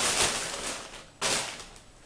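A plastic shop bag rustling and crinkling as a dress is pulled out of it: one long rustle fading over the first second, then a second, sharper rustle that dies away.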